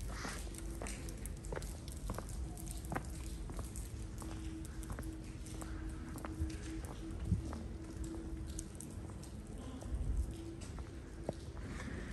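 Footsteps on stone paving at a steady walking pace, each step a short sharp click, with a faint steady tone in the background for most of the time.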